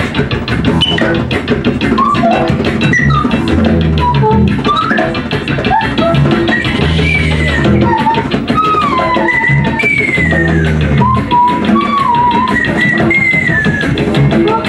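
Live improvised music from a small band: plucked double bass notes and a steadily played drum kit, under a high, wordless female voice that slides and warbles up and down in pitch.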